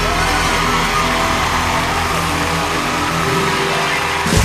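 Live band with piano and acoustic guitars holding a sustained chord at the close of a country song.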